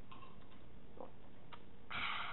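A few faint, soft clicks over low room hiss: a person swallowing gulps of water from a mug.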